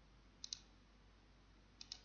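Two faint computer mouse clicks, about a second and a half apart. Each is a quick pair of light clicks, the button's press and release.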